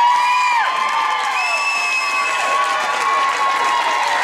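Audience cheering and applauding as a dance ends, with clapping throughout and several long, drawn-out 'woo' whoops held over it.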